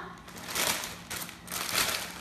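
Thin plastic crinkling as it is handled, in three short bursts.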